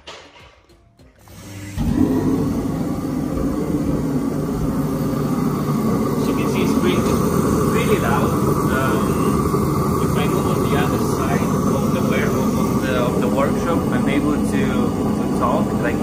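Master Climate Solutions B35 direct-fired diesel torpedo heater starting when it is plugged in: its fan and burner come up over about a second, then it runs with a steady, loud noise.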